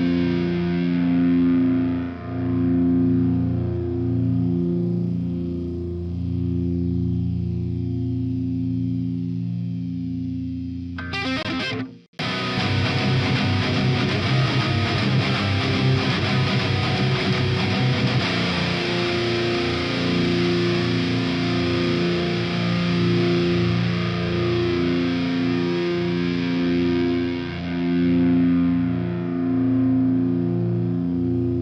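Distorted electric guitar playing slow, held chords that ring steadily. About twelve seconds in it cuts out abruptly for a moment, then comes back with busier, denser playing.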